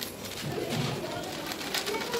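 Plastic flour bag crinkling and rustling as gram flour is shaken out of it into a steel bowl, with a short low-pitched sound about half a second in.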